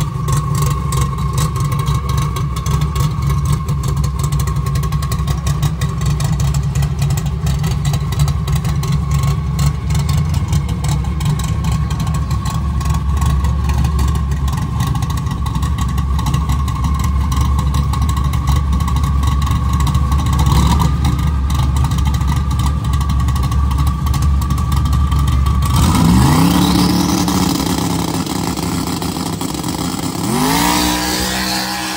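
Drag-race 6th-generation Camaro engine idling loud and lumpy, with a rapid uneven pulse. About four seconds before the end the note changes and climbs in pitch as the engine revs up.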